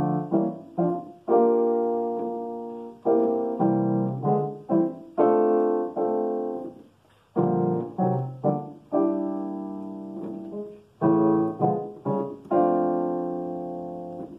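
Digital piano played in block chords, jazz style: full chords struck together with every voice moving in the same direction under the melody. They come in short rhythmic groups, each chord ringing and fading before the next.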